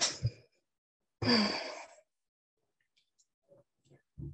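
A woman sighing: a breath out right at the start, then a longer, deeper sigh about a second in. A few faint small clicks follow near the end.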